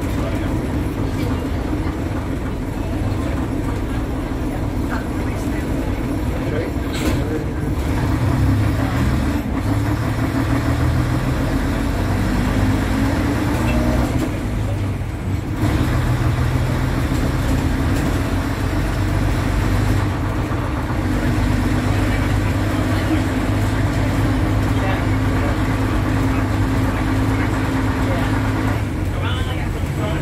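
Vintage bus engine running under way, heard from inside the saloon, its note rising and falling as the bus pulls and changes gear.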